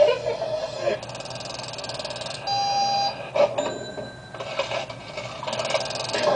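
Electronic alarm-like sounds: a rapid buzzing ring for about a second and a half, then a steady beep of about half a second, followed by a few clicks.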